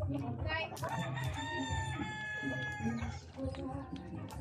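A rooster crowing: one long crow of about two seconds, starting about a second in, with a short rising note just before it.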